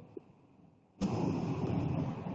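Near silence, then about a second in a sudden, steady rush of noise from a microphone opening on the online call, carrying wind-like background rumble and hiss.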